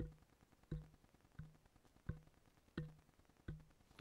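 Light taps on the body of an Earthworks SR117 handheld condenser microphone, heard through the microphone itself as handling noise: six dull thumps, evenly spaced about two-thirds of a second apart, each with a brief low ring. The handling noise is modest, which the tester judges acceptable.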